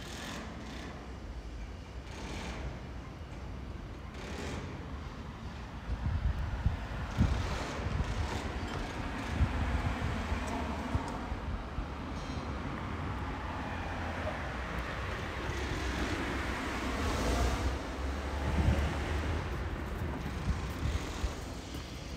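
Outdoor street ambience: a low rumble of wind on the microphone with road traffic noise, louder from about six seconds in.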